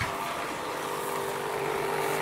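Pool filter pump, a 12 V AC motor fed by a 50 Hz square-wave inverter, starting up and running with a steady hum. It is running dry with no water in it, which makes it complain a little.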